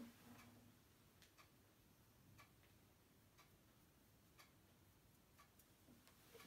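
Near silence: quiet room tone with a faint, regular tick about once a second.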